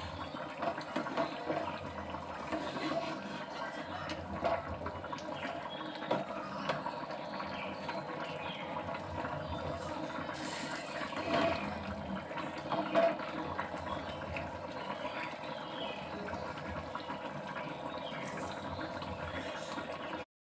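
A pan of thin fish curry gravy simmering and bubbling steadily, with a few light clicks and scrapes of a metal spatula stirring it.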